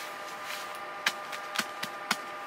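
A few light, sharp taps at uneven spacing, the first about a second in, over a faint steady hiss.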